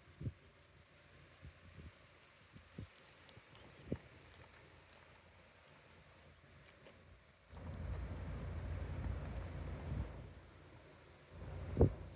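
Quiet open-air background with a few faint taps. From about seven and a half seconds in, about three seconds of low rushing rumble from wind buffeting the microphone, then a sharper knock just before the end.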